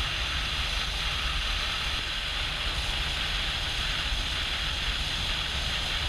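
Steady wind rush on a helmet-mounted microphone over the low, even rumble of a BMW R18's 1800 cc boxer twin at a steady cruise.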